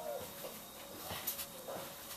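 Faint whimpering from a dog: a thin, high whine at the start, then a few short broken whines, with a couple of soft clicks.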